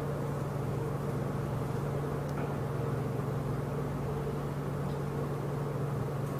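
A steady low hum over a constant background hiss, unchanging throughout, with no speech.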